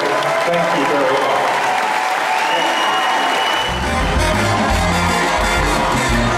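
Audience applauding, then about three and a half seconds in a band's music starts with a heavy, steady bass line.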